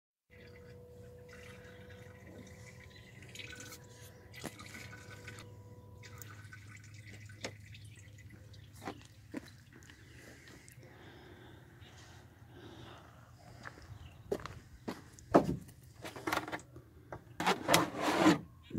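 Liquid running and dripping into a plastic jug from a Chevy HHR's fuel rail, pushed out by the electric fuel pump, which is running on a wire-jumpered relay. What comes out is mostly water, not gasoline. A faint steady hum stops about six seconds in, and louder knocks and handling noises come near the end.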